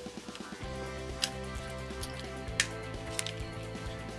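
Soft background music with sustained chords, broken by a few sharp plastic clicks as the battery compartment door of a head-mount magnifier is pried open with a fingernail.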